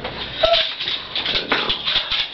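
A dog whining, with a short whimper about half a second in.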